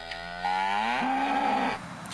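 A cow mooing once: one long call that rises in pitch, then holds steady before stopping shortly before the end.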